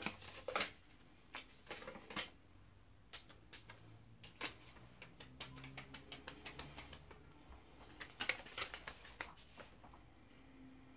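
Quiet handling noises: scattered light clicks and paper rustles from a perfume bottle and a paper blotter being handled, with a denser cluster of clicks near the end.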